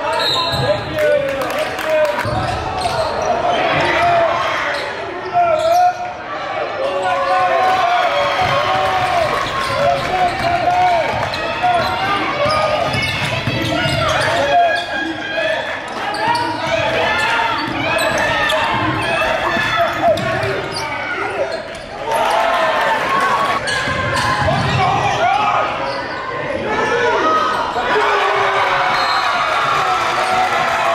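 Live basketball game sound in an echoing school gym: many voices from the crowd and bench shouting over a basketball bouncing on the hardwood floor.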